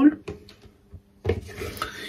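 A makeup brush rubbed over a pressed eyeshadow in the palette to pick up the blue shadow. There are a few faint touches in the first half, then a brief rubbing in the second half.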